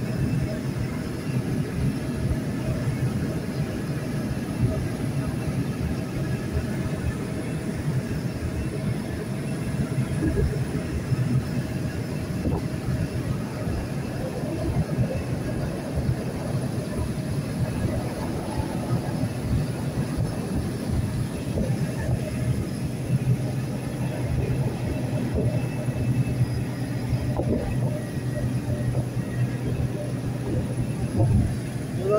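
Steady engine hum and road noise heard from inside a moving vehicle cruising on the highway.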